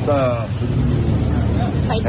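A man's voice speaking Thai, clearest in the first half second, over a steady low rumble.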